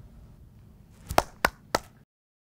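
Three sharp taps in quick succession, about a quarter second apart, over faint low room tone.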